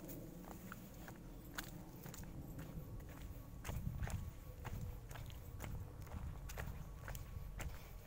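Footsteps on a dirt path through undergrowth, with irregular small clicks and crackles of leaves and twigs and a low rumble that swells about halfway through.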